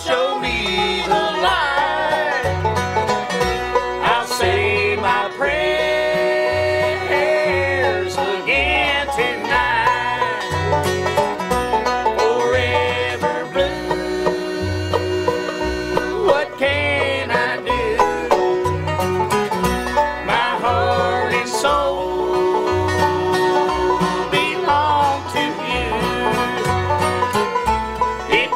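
Bluegrass band playing an instrumental passage with banjo to the fore over guitar, and a steady bass line alternating between two low notes.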